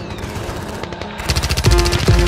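Rapid automatic gunfire from a light machine gun, as a film sound effect. It starts about a second in as a fast, even string of shots after a lower stretch of noise.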